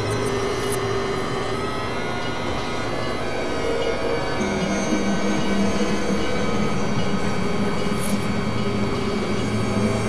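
Experimental electronic drone music: several held synthesizer tones over a dense, screechy noise wash. About four and a half seconds in, a lower held tone comes in.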